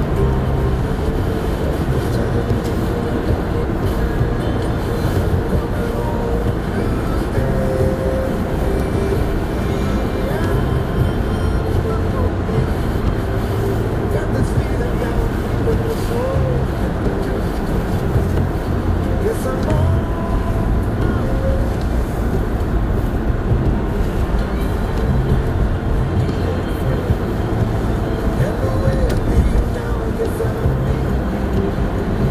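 Steady engine and road rumble inside a moving car's cabin, with a car radio playing music and indistinct talk underneath.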